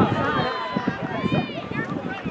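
Spectators shouting encouragement to runners in high-pitched voices, with one long rising-and-falling yell near the end.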